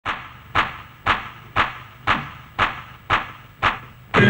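Eight slow, evenly spaced hand claps, about two a second, each ringing out briefly before the next.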